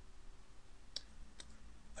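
Two faint clicks of a computer mouse button or key, about a second in and again less than half a second later, over low room hiss.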